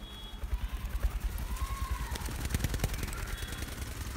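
Young sun conure flapping its wings close to the microphone: a rapid, irregular flutter of clicks and wing beats, densest a couple of seconds in.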